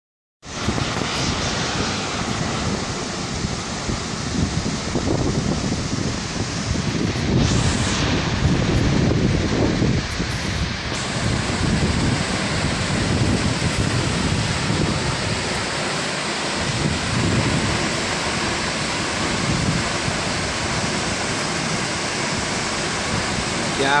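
Howick Falls, a tall waterfall plunging into its pool: a steady rush of falling water, with wind buffeting the microphone in uneven gusts.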